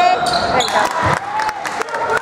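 Basketball game on a hardwood gym floor: the ball bouncing and sneakers squeaking as players go for a rebound and run up the court, with players' voices.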